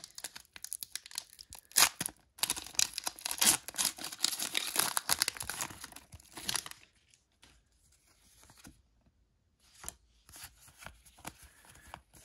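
A Pokémon Vivid Voltage booster pack's foil wrapper being torn open, with dense crackling and crinkling for about seven seconds. After that come only a few faint rustles as the cards are handled.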